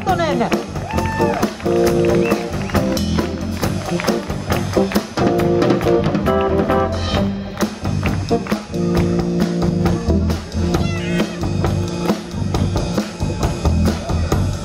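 A live band playing an instrumental passage: drum kit beat with electric bass under held chords.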